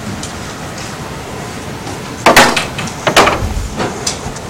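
Steady faint hiss, then two short taps a little under a second apart in the second half, with a few softer ticks after them.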